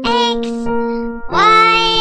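Children's song: a high, childlike singing voice holding two notes over instrumental backing, the second note starting a little past the middle.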